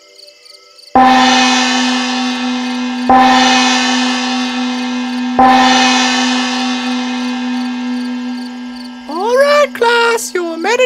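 A meditation bell struck three times, about two seconds apart. Each stroke rings on and slowly fades over a steady low tone. The strokes mark the close of the meditation.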